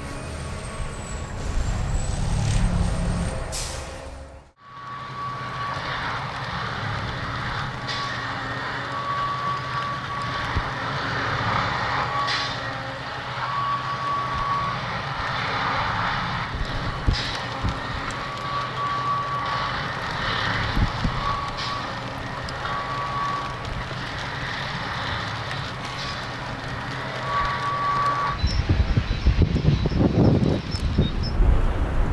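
Track tamping machine's engine running steadily, with an intermittent high warning tone sounding in beeps of varying length and a few sharp knocks. The sound drops out briefly about four seconds in and grows louder near the end.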